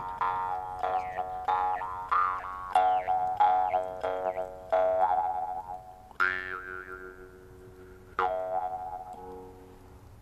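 Jaw harp (Mongolian aman khuur) played solo: quick, repeated twangs over a steady drone, with the overtones shifting up and down to make a melody. Near the end the plucking slows to two single twangs left to ring out and fade.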